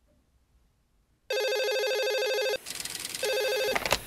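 Corded landline telephone ringing with a rapidly warbling electronic ring, in two bursts: a ring of a little over a second, a short pause, then a shorter second ring just before it is answered.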